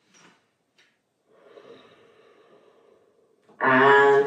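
A faint, soft breath, a long exhale lasting about two seconds, picked up close by a clip-on microphone. A woman's voice starts speaking loudly near the end.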